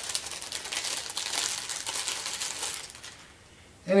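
Crinkling and rustling of a comb's packaging being opened by hand as a wooden comb is pulled out, a run of quick small crackles that dies down about three seconds in.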